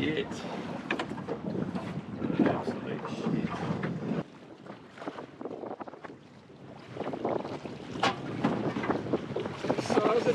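Wind buffeting the microphone with water slapping against a small boat's hull, and scattered short clicks. The sound drops suddenly about four seconds in and picks up again a few seconds later.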